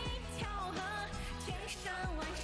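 A woman's voice singing a Chinese pop song over a DJ-style dance backing track with a steady bass beat.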